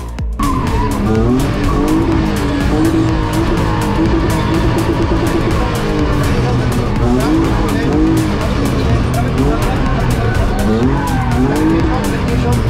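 A BMW E36 Compact rally car's engine revving hard through the gears, its pitch climbing and dropping at each shift, heard from inside the cabin. Tyre noise runs under it.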